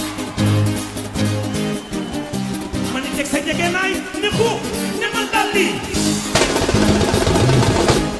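Senegalese mbalax band playing live: a stepping bass line under drums and percussion, with wavering high melodic lines in the middle, then a louder, denser rush of sound in the last second or two.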